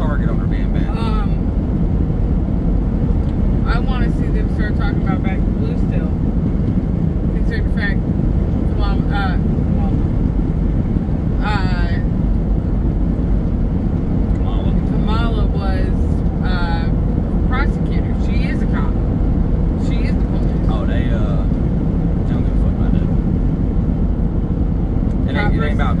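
Steady road and engine noise heard inside a car's cabin while driving at highway speed, with a voice talking on and off over it.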